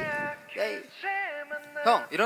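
K-pop stage performance music: a melodic line of short notes that bend up and down in pitch, with no bass underneath.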